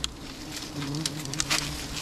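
Wild honey bees buzzing around their open comb as it is disturbed by hand, a low hum that wavers in pitch as bees fly past. A few sharp clicks sound over the buzzing.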